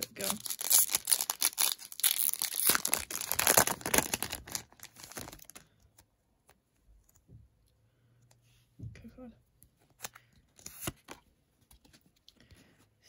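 Foil Pokémon booster pack wrapper being torn open and crinkled, a loud crackling for about five seconds. After that, fainter scattered clicks as the trading cards are handled.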